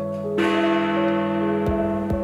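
Big Ben, the cracked great bell of the Elizabeth Tower, struck once by its hammer about half a second in and ringing on with its deep, somber E note. The crack from a too-heavy hammer gives the note its somber colour. Soft piano music plays under it, and a sharp knock comes near the end.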